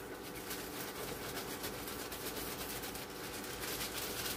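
Quiet kitchen room tone: a faint steady hum with light rustling and small taps from hands working at a plastic mixing bowl.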